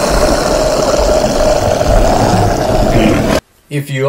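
Loud, dense static-like noise from a horror-show intro soundtrack, with a faint steady hum in it, cutting off suddenly about three and a half seconds in. A man's voice begins just after.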